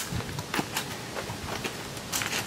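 Faint, scattered taps and scuffs of sandalled footsteps on dirt and concrete, with a light kick at a small object on the ground.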